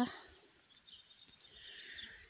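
Quiet outdoor background with faint bird chirps.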